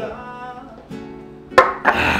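Acoustic guitar music with ringing plucked notes. About one and a half seconds in, a sharp knock cuts in, the loudest sound here, followed by a second one just before the end.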